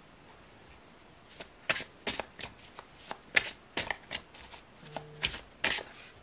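Tarot cards being shuffled and handled: an irregular run of crisp card snaps and flicks starting about a second in and stopping just before the end, the loudest about halfway through, as a card is drawn from the deck.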